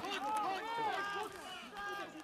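Several voices shouting and calling out over one another on a football pitch, loudest in the first second and easing off.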